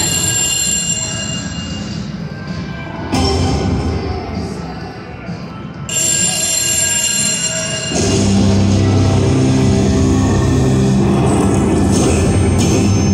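Video slot machine's electronic game music and chimes from its speakers, changing in steps as the reels stop. About two-thirds of the way in it swells into a louder, fuller fanfare as the free-spins bonus triggers.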